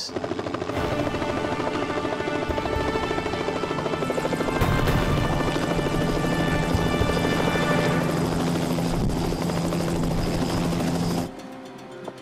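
Helicopter rotor and engine running steadily, heard from inside the cabin, with a fast even chop of the blades. The sound cuts off sharply about eleven seconds in.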